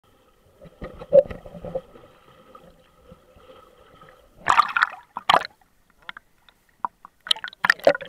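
Muffled underwater sound from a snorkeller's waterproof camera: knocks and a faint steady hum early on, then loud splashing and bubbling bursts about halfway and near the end as the camera moves through and breaks the water surface.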